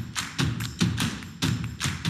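Background music with a steady percussive beat: regular low thuds paired with sharp clicks, about two to three hits a second.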